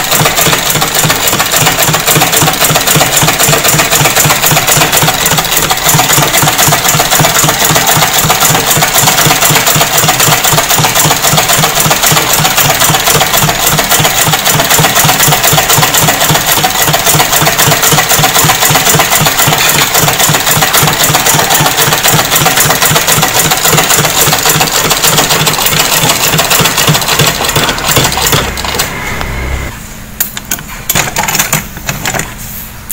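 Vintage Singer sewing machine running steadily, stitching a seam in shirt fabric with a fast, even clatter of the needle mechanism; it slows and stops near the end.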